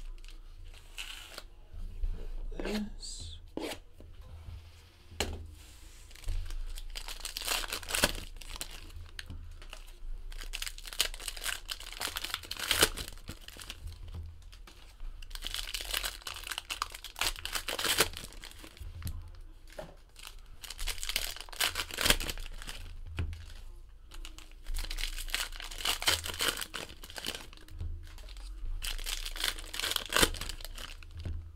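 Foil trading-card packs of Panini Prizm Basketball being torn open and their wrappers crinkled, in several bouts of tearing and rustling, with cards handled between.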